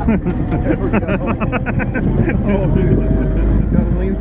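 Army jeep's four-cylinder engine running with a steady low rumble while driving, open to the air, with people laughing and talking loudly over it.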